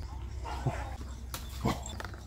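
A dog gives two short barks, the first about two-thirds of a second in and the second about a second and a half in.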